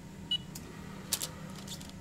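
Mettler Toledo analytical balance giving one short, high beep as its touchless sensor is swiped to open the draft-shield chamber, followed by a few sharp clicks and rustles.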